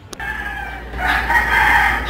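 A rooster crowing: one long call that swells about a second in.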